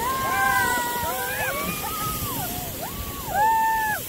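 Several drawn-out, high-pitched vocal calls in a row, a person whooping or squealing without words, loudest near the end, over a steady rushing noise.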